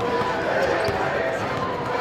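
Basketballs bouncing on a hardwood gym floor during pre-game warm-ups, under a steady chatter of many voices echoing in a large gym.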